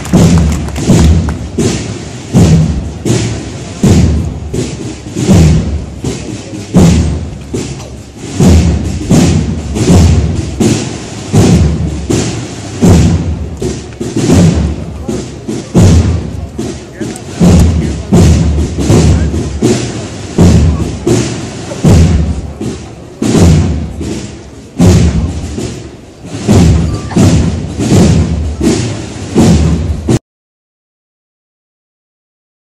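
Drums of a Semana Santa cornet-and-drum band beating a slow, steady processional beat, about one heavy stroke a second, recorded close and loud.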